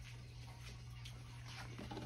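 Quiet room tone with a steady low hum, and a few faint soft ticks in the second half.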